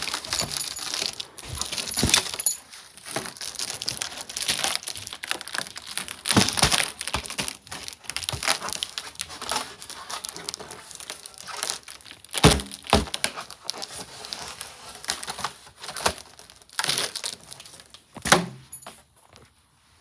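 A foil heart balloon crinkling and crackling as a dog bites and mouths at it, a continuous run of crackles with a couple of louder knocks about twelve and eighteen seconds in. The balloon holds without bursting.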